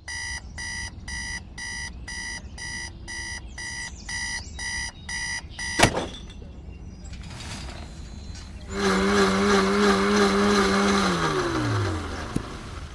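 Electronic alarm clock beeping about twice a second, cut off by a sharp click about six seconds in. A hiss with a low steady hum follows about nine seconds in, and the hum drops in pitch near the end.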